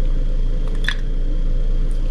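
A steady low hum fills the room, with one faint short tick or rustle about a second in.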